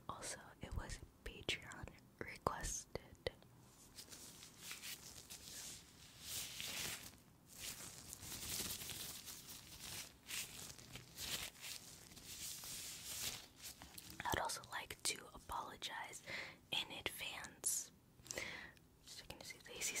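Disposable latex gloves rubbed and handled close to a microphone, a dry, uneven rustling hiss that comes in waves through the middle. Soft whispering comes in near the end.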